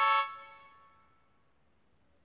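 Keyboard with a synthesized trumpet voice ending a quick run of notes on a held A, which fades out within about a second.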